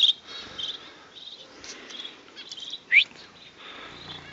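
Small aviary birds chirping in short, high, repeated trills, with one loud, quick rising call about three seconds in.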